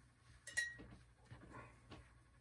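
A faint sharp clink about half a second in, then a few softer knocks and a brief rustle: a paintbrush working at the oil-paint palette.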